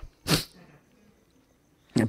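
A man's single short, sharp breath, then quiet.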